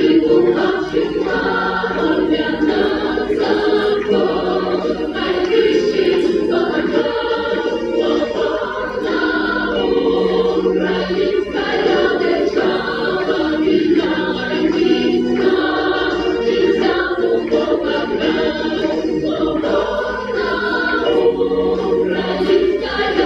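A choir singing a slow sacred hymn unaccompanied, several voices holding long chords.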